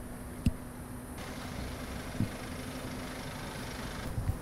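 Steady engine hum with a low held tone, as of machinery running at a construction site, with two short low knocks, one about half a second in and one about two seconds in.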